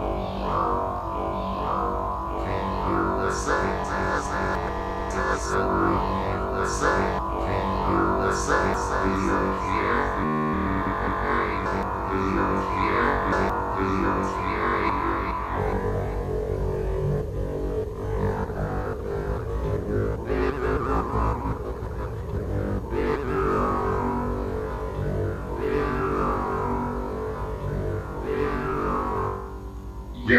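Live band music: a dense, sustained wash of synthesizer and guitar tones with no vocals.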